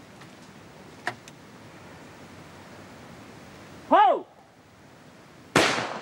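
A light click about a second in as the break-action shotgun is closed. Near 4 s comes a short shouted call for the clay. About a second and a half later comes a single loud shotgun shot at a going-away clay target, with a short echoing tail.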